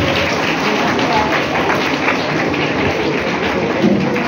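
Steady chatter of many students' voices talking at once, with no single voice standing out.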